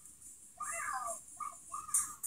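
A high-pitched cartoon character voice from the video playing on the computer, a few short calls rising and falling in pitch, heard through the computer's small speakers.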